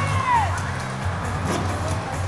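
Yosakoi dance music with a steady, pulsing bass beat; a high melodic line glides down in pitch in the first half second.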